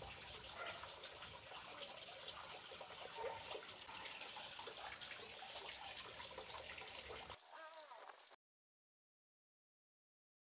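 Faint background hiss with light scattered crackles, as of fingers pressing plant cuttings into loose potting soil. The sound cuts off to dead silence a little after eight seconds in.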